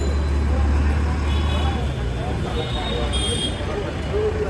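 Busy street-market ambience: a steady low rumble of traffic under the scattered chatter of many voices.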